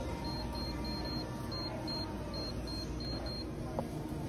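Self-checkout payment terminal keypad beeping as a phone number is keyed in: about ten short, high-pitched beeps in quick succession, one per key press.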